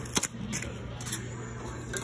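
A single sharp knock shortly after the start, then a few faint ticks, over a steady low hum of workshop machinery.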